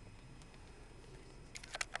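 Faint steady low hum of a 2008 Hyundai Accent's 1.6-litre four-cylinder idling, heard inside the cabin. A quick run of small clicks comes near the end.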